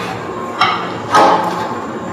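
Metal handrail section of a modular ramp being hooked onto and pressed down over its legs: two knocks as the connections snap into place, a lighter one about half a second in and a louder one just after a second.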